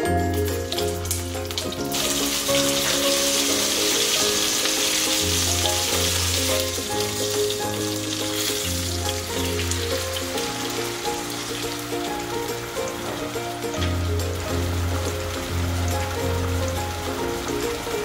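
Cabbage rolls sizzling as they brown in hot oil in a stainless steel pot, the sizzle loudest from about two seconds in and fading after the middle, under steady background music.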